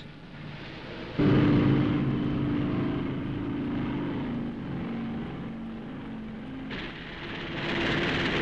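An aircraft passing, its engine note starting suddenly about a second in and slowly falling in pitch as it goes by. It fades near the end into a rush of noise.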